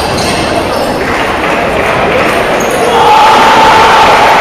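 Table tennis rally: the celluloid ball ticking off paddles and table over loud voices and chatter echoing in a sports hall, with one voice raised and held about three seconds in.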